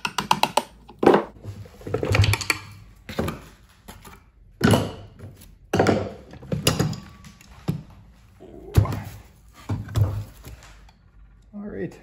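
Jatco CVT transmission case being worked loose and pulled off its pulley assembly by hand: a series of separate metal clunks and knocks, roughly one a second.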